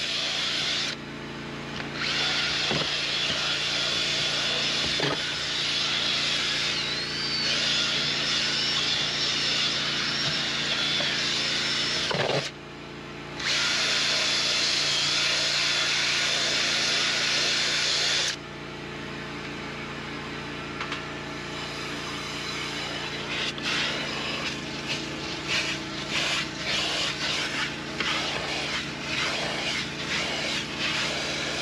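Cordless drill with a scrub brush attachment whirring as it agitates shampoo into car carpet and cloth seat upholstery. It runs in long stretches, stopping briefly about a second in and about twelve seconds in. After about eighteen seconds the drill stops and a quieter, steady motor hum carries on, with irregular scraping and ticking.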